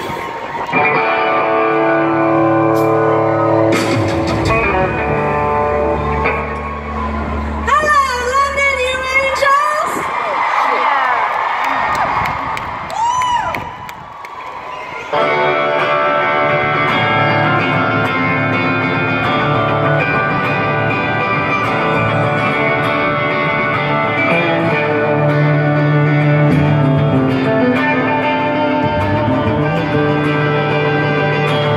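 Live amplified rock music heard through a large outdoor PA from within the crowd. Held electric guitar chords with effects make a slow intro, with warbling, wavering tones partway through. About halfway in, the full band comes in suddenly and louder, with strummed electric guitar over bass and drums.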